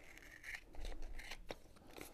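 Scissors faintly snipping a piece of kinesiology tape, rounding off its corners.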